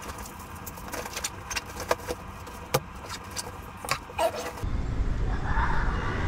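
Small clicks, rattles and jangles of gear and items being handled and packed into a bag. About four and a half seconds in, a louder steady low rumble of outdoor noise takes over.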